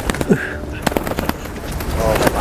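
Pigeon wings flapping in a string of sharp, irregular claps as a handler holds the bird up to throw it.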